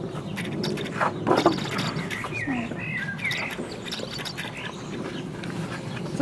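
Small birds chirping, a few short twittering calls two to three seconds in, over steady outdoor background noise, with a couple of short knocks about a second in.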